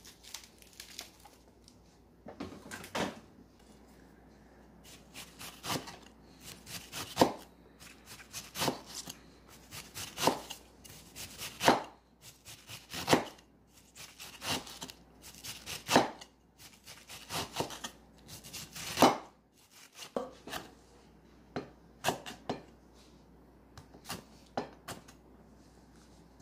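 Kitchen knife slicing through a head of cabbage on a wooden cutting board: repeated cuts, each ending in a knock of the blade on the board, about one every second and a half, softer near the end.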